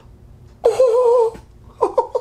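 A man's drawn-out, wavering "oooh" of amazement, starting about half a second in and lasting under a second, followed by a few short vocal sounds near the end.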